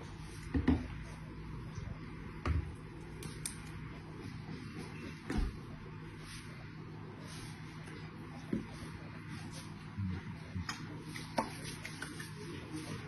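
Steady low hum with about six soft, scattered thumps and knocks, the loudest just under a second in, as from things being handled and set down on a kitchen counter.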